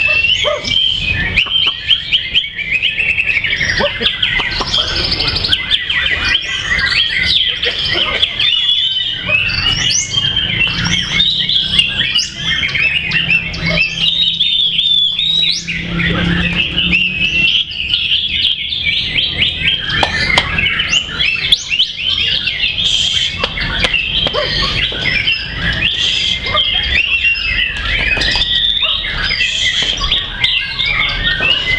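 White-rumped shama (murai batu) contest song: a dense, unbroken stream of fast chirps, trills and sweeping whistles, with other contest birds singing over one another in the same stream.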